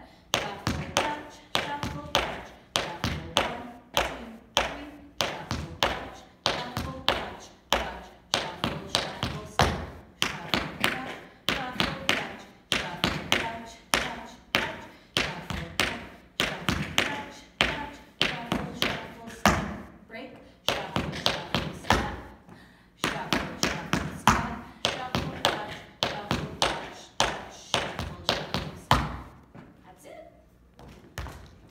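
Metal taps of tap shoes on a studio floor: a tap dancer runs a shuffle combination (shuffles, touches and shuffle-shuffle-steps) at a quick tempo, a steady stream of sharp clicks with a brief pause about two-thirds of the way through.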